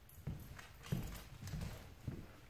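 Footsteps of a person and a dog walking together on a hardwood floor: even thumps about every half second or so, with lighter clicks of the dog's paws in between.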